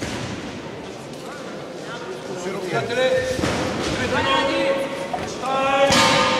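Men's voices shouting and calling out from ringside, echoing in a large hall. The shouting starts about halfway through and grows louder towards the end, with one held call.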